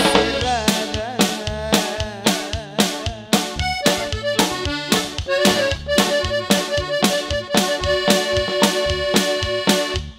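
Live norteña band playing an instrumental passage: accordion leading over bass guitar and a steady drum-kit beat. From about four seconds in, the accordion holds long sustained notes.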